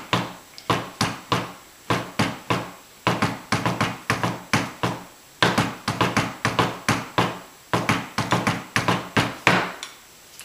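Fluffy-headed pipe-band tenor drum mallets striking in the drum salute's tenor rhythm: dull thuds several a second, with a couple of short breaks, stopping just before the end.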